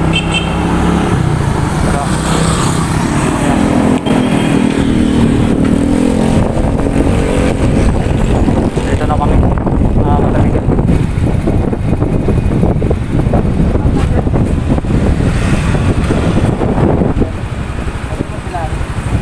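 Motorcycle engine running with road and wind noise, heard from the rider's seat; a steady engine tone in the first few seconds gives way to a dense, noisy rumble.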